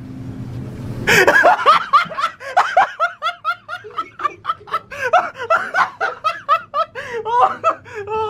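A group of people laughing hard, in rapid, breathless bursts that break out about a second in and keep going.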